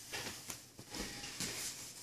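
Faint rustling and a few soft knocks of two grapplers shifting their bodies on a training mat.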